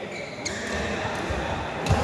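Footfalls and short shoe squeaks of badminton players moving on an indoor court, with a few light knocks and one sharp thud just before the end, the loudest sound.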